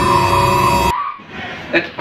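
Background music with a held high tone over it, cutting off suddenly about a second in, followed by a brief shout.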